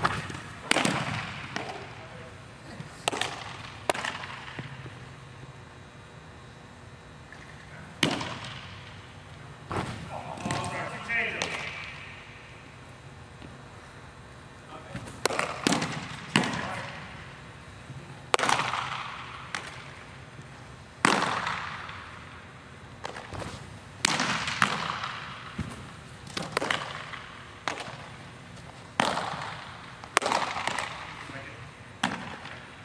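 Pitched baseballs smacking into catchers' mitts, about a dozen sharp pops a few seconds apart, each ringing on in a long echo off the walls of a large indoor hall.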